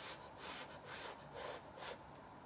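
A person slurping hot noodles off chopsticks: short, faint, airy sucking breaths, about two a second.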